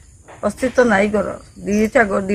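A woman speaking, in short phrases with a pause before each, over a steady high-pitched background drone.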